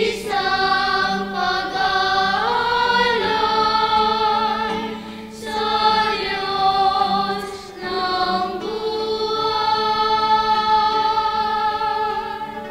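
Children's choir singing a hymn with acoustic guitar accompaniment, in long held phrases with short breaks about five and eight seconds in.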